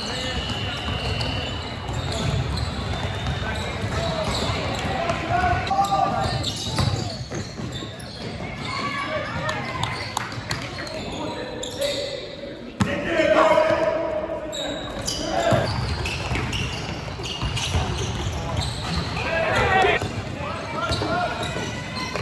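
Live court sound of youth basketball games in large gyms: a basketball bouncing on the floor amid indistinct voices of players and spectators. The sound changes abruptly partway through where one game clip cuts to another.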